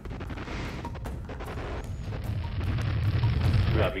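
A deep rumble with a hiss above it, swelling louder over the last couple of seconds.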